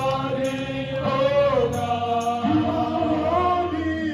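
Two women singing a gospel worship song into microphones, holding long notes that slide slowly in pitch.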